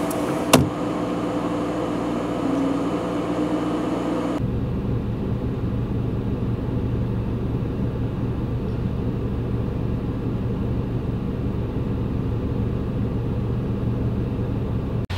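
Steady hum of a parked car idling, heard from inside the cabin. There is a sharp click about half a second in, and at about four seconds the hum turns deeper and duller.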